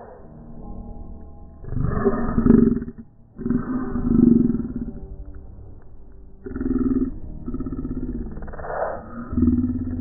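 Low, gravelly roar-like vocal sounds in about five bursts of one to two seconds each, with short gaps between them.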